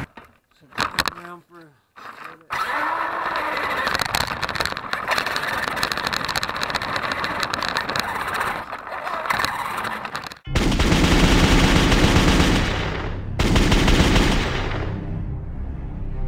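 A dense, rapidly crackling rattle for about eight seconds, then loud music with a heavy low beat begins about ten and a half seconds in.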